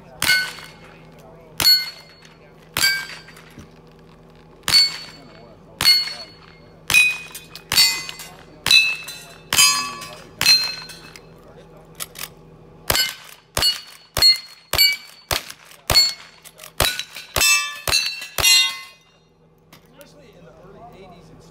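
A string of about twenty gunshots, each followed by the ringing clang of a steel target being hit. The shots come about a second or more apart at first, then quicken to about two a second over the last six seconds before stopping.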